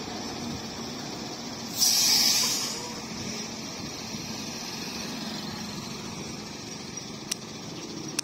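Yutong coach engine running low and steady as the bus manoeuvres slowly. About two seconds in there is a loud burst of hiss that lasts under a second.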